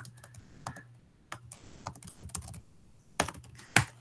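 Typing on a computer keyboard: a run of irregular key clicks as a short terminal command is typed, with two louder keystrokes near the end.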